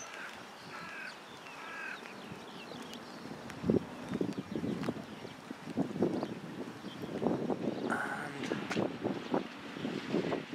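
Footsteps crunching on wet gravel, starting about three and a half seconds in and going on at a walking pace, with a bird calling a few times in the first two seconds.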